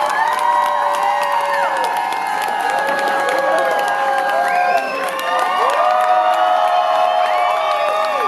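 Concert audience cheering and whooping, many voices shouting at once.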